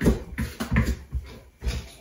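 Wooden spoon stirring a stiff fudge dough of Nutella, butter and powdered sugar in a bowl: a run of dull thuds and scrapes, about two to three strokes a second.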